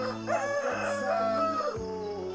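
A rooster crowing once, about a second and a half long, over background music.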